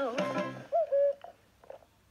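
The last sung note of the advert's jingle trailing off, followed about three quarters of a second in by a brief two-note pitched sound, then near silence.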